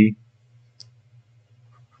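Pencil writing on paper, with a faint tap of the lead about a second in, over a steady low hum.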